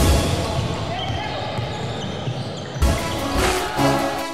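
A basketball being dribbled on a hardwood court, with voices from the game around it; background music comes back in about three quarters of the way through.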